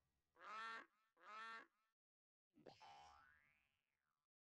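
Faint cartoon sound effects: two short honking sounds, then a longer sound whose pitch slides up as it fades out.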